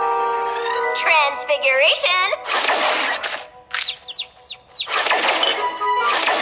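Cartoon soundtrack of magical teleporting: a held music chord, then a wavering cry with a wobbling pitch, a loud hissing teleport zap, a quick run of high chirps, and a second hissing zap near the end.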